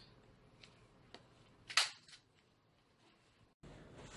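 A hand staple gun firing once with a sharp snap just under two seconds in, with a few fainter clicks around it, as staples are driven into the corners of a bed base.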